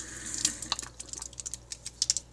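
Water pouring out of a mug and splashing, stopping a little way in, followed by a scatter of light clicks and knocks.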